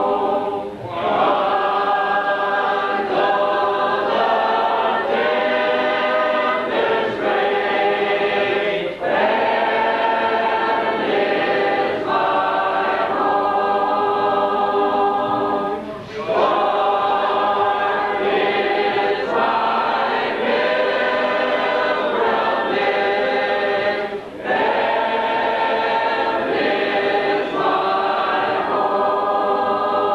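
Church congregation singing a hymn together, unaccompanied. The singing runs in long lines with a brief pause for breath about every seven or eight seconds.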